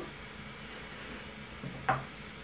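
Mostly quiet room tone, with a single short click near the end.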